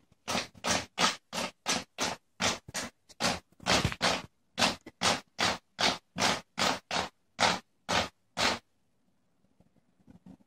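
A cat clawing: a rapid run of scratching strokes, about three a second, that stops about eight and a half seconds in.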